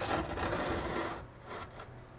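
Large pottery vase rubbing and scraping on a wooden shelf as it is turned by hand: a rough scrape for about a second, then fading away.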